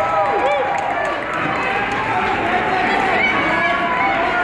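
Several voices shouting over one another in a large gym: coaches and spectators yelling to the wrestlers during the bout.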